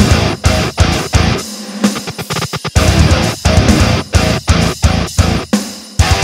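Metalcore instrumental breakdown: heavily distorted electric guitars and drum kit hitting in a stop-start chugging rhythm with short gaps between hits. About one and a half seconds in the low end drops out briefly, then the band stutters back in with a quick run of short chugs.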